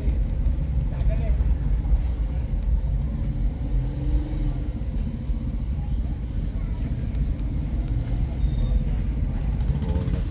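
Busy street ambience: a steady low rumble of traffic and motorcycles, with faint voices of passers-by.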